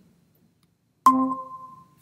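Google Meet's join chime: a single bright electronic chime about a second in, ringing out and fading over about a second, the sign that the computer has just joined the video call.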